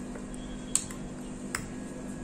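A steel spoon clicking lightly twice against a stainless steel grinder jar while scooping thick ground chutney paste, over a faint steady hum.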